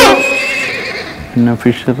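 The fading end of a wavering comic sound effect from the background score, falling in pitch and dying away over the first second. A man starts speaking near the end.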